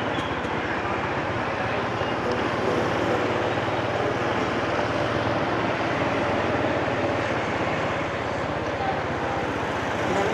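Motorbike engine running steadily while riding along a city street, mixed with road and wind noise at an even level.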